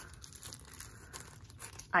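Small clear plastic zip-top bags of sequins crinkling faintly as they are handled.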